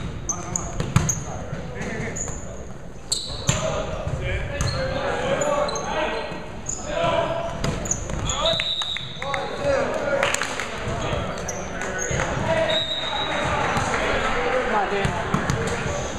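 Volleyball rally in an echoing gym. The ball is struck by hands and arms in sharp slaps, the hardest near the start and about three seconds in. Sneakers give short high squeaks on the hardwood court, and players' voices carry over it.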